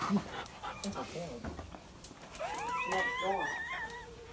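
Dog whining in high, wavering tones through the second half, after a couple of seconds of scattered soft knocks and rustles.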